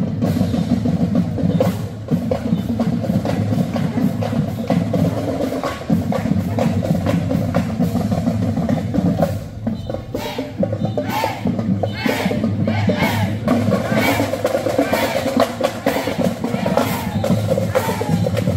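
Marching-band music: drums and percussion keep up a steady beat, and pitched wind-instrument lines come in about halfway through.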